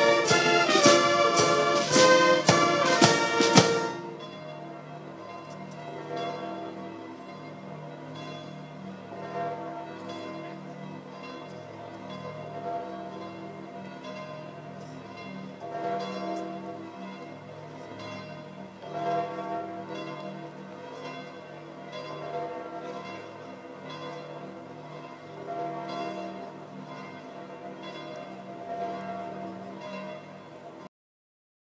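A brass band plays loudly and stops about four seconds in. Then the church bells of St Peter's Basilica peal on, quieter, in a steady run of overlapping strokes with a few louder swells.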